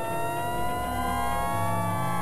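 Experimental electronic drone music: several sustained tones glide slowly upward in pitch together over low bass tones that change in steps.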